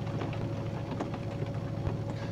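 Steady low rumble of a vehicle's running engine heard from inside the cab, with a faint steady hum above it.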